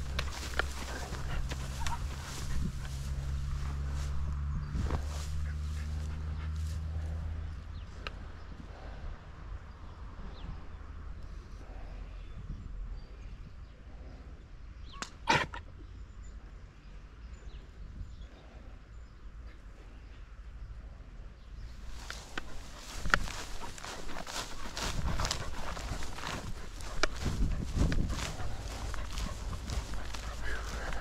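Footsteps through grass, with a low steady hum for the first several seconds and a single sharp click about halfway through. A run of footsteps follows near the end.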